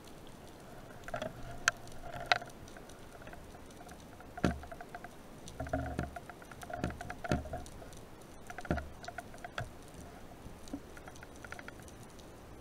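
Underwater crackle of quick irregular clicks, with a few sharp knocks and several dull thumps from about halfway through, picked up by the speargun camera as the spearfisherman dives.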